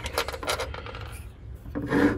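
Small metal ground bracket from a distributor cap clinking as it is set down on a hard surface: a few light clicks in the first half second, then quieter scraping as it is handled.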